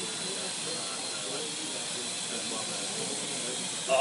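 Small indoor quadrotor's electric motors and propellers running, a steady hiss with a thin high whine, as it flies under hand-gesture control.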